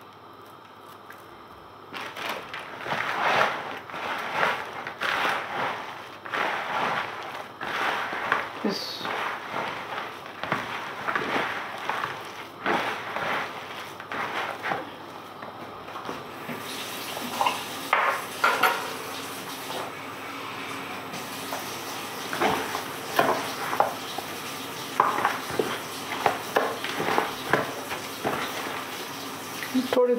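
Hands mixing pakora batter of chopped onion, greens and flour in a plastic bowl: a dense run of short, irregular rubbing and scrunching strokes, starting about two seconds in.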